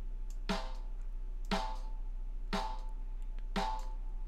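A soloed snare drum track playing back, four hits about a second apart. Each hit rings on with a high, annoying tone from a narrow EQ boost of about 15 dB near 900 Hz, which brings out a problem overtone resonance in the snare.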